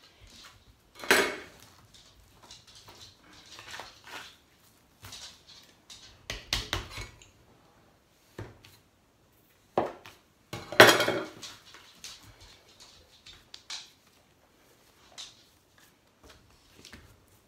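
Stainless steel mixing bowl and utensils scraping and knocking as cookie dough is scraped out and cut, in irregular bursts with two louder clatters, one about a second in and one about eleven seconds in.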